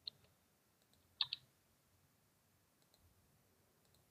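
Computer mouse button clicking: one click just after the start and a quick double click about a second in, against near silence.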